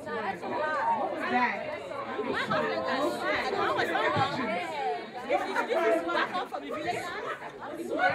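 Speech only: several voices talking over one another, in the echo of a large hall.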